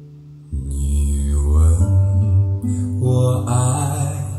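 Music: a fading acoustic guitar chord, then about half a second in a low singing voice comes in over guitar and bass, phrase by phrase.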